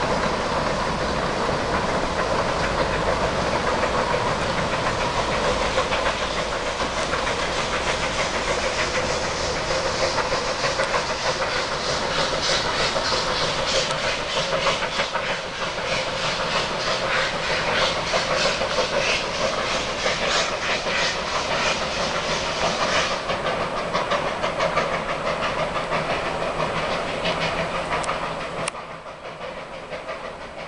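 Puffing Billy narrow-gauge steam locomotive working a passenger train: a steady hiss of steam with a run of regular exhaust beats in the middle, and the carriages rolling along the line. The sound drops away sharply near the end.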